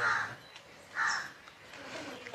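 A crow cawing twice, about a second apart, in short harsh calls.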